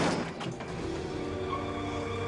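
A short burst of scraping and knocking as a large wheeled rubbish container is shoved, loudest right at the start. It gives way within about half a second to background music with long held notes.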